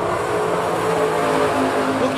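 Several dirt-track Late Model Street Stock cars' V8 engines running at racing speed together, a steady, layered drone of engine notes that drift slightly in pitch.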